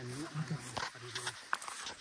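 A man's low voice speaking in short, quiet phrases, with a couple of footfalls on a dirt path.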